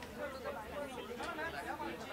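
Indistinct chatter of several people talking at once, no single voice standing out.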